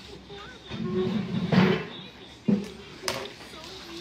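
Indistinct, muffled talking, with a sharp knock about two and a half seconds in and a light click shortly after.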